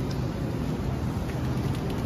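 Steady rushing background noise of a supermarket's refrigerated produce section, the hum of display-case cooling and air handling.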